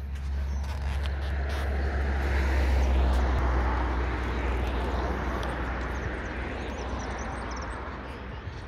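A vehicle passing by: a rush of road noise over a low rumble that swells to its loudest about three seconds in, then slowly fades.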